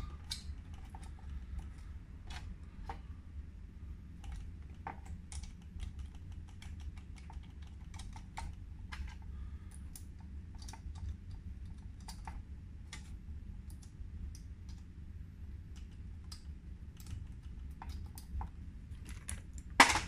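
Irregular light clicks of small steel washers and nuts being picked up and fitted over the hub bolts of a skateboard wheel, with a louder click near the end.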